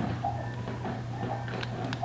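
A steady low hum under a pause in speech, with a few faint clicks at the computer near the end as the photo filmstrip is scrolled.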